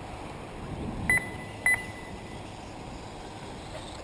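Two short electronic beeps about half a second apart, the loudest sounds here, over a steady outdoor background hiss.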